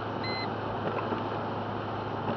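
Steady road and engine noise inside a car driving on a wet highway, with a low hum underneath. A single short electronic beep sounds about a quarter second in.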